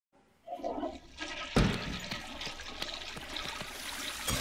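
A toilet flushing: a sudden rush of water starts about a second and a half in and runs on steadily.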